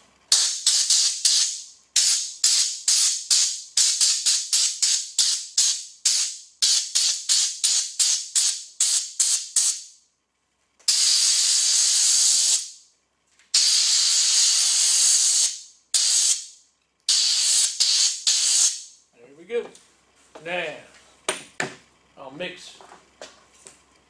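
Compressed-air blow gun on a shop air hose, fired in many quick short bursts of hissing air, two or three a second, then several longer blasts of a second or two each, blowing sanding dust off a sanded wood surface.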